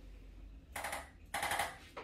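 Handheld electric chiropractic adjusting instrument firing rapid trains of percussive taps against the lower back and hip, in two short bursts, the second a little longer.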